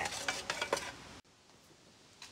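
Stainless steel pan of foaming degreaser being shaken by an old electric hand sander, the metal pan rattling and clinking as the solution churns. The sound cuts off abruptly just over a second in, leaving faint room tone.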